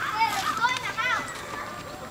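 A toddler's high-pitched giggles and squeals, several short calls in the first second.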